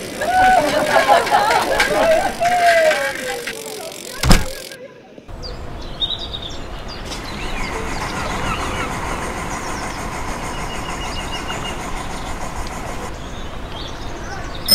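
Outdoor street ambience: background voices chattering for the first few seconds, then one heavy thump about four seconds in. After a brief drop-out comes a steady, even outdoor background with a few faint high chirps.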